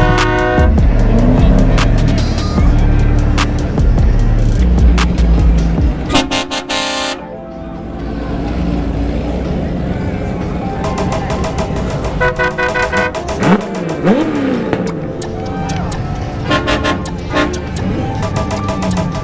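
Vehicle horns honking again and again as show cars drive past a crowd, with one loud, long blast about six seconds in, over bass-heavy music that drops out at about the same moment. Brief whistle-like rising and falling tones come a little past the middle.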